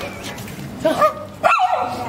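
Gaddi puppy giving two short, high-pitched yips about a second in, roughly half a second apart.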